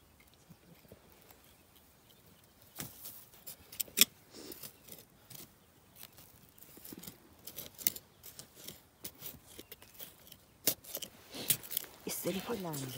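A small hand-held digging blade chopping and scraping into earth and roots: irregular short knocks and scrapes, the sharpest about four seconds in and a quick cluster near the end.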